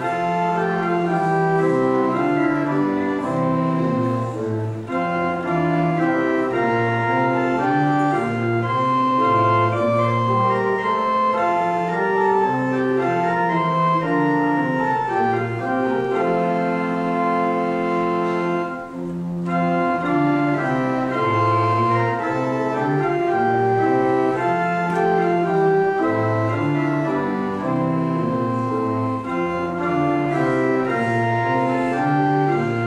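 Pipe organ playing a hymn in slow, sustained chords, with a short break about nineteen seconds in before the next phrase.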